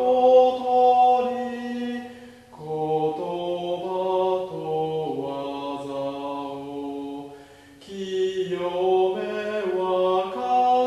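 A small choir sings a slow hymn in harmony, holding long notes. The singing breaks briefly between phrases, about two and a half seconds in and again near eight seconds.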